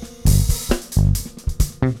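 Live jazz trio playing a stop-start phrase: short, punchy low notes on a Fender Jazz Bass electric bass guitar, answered by sharp drum kit hits, with electric keyboard in the band.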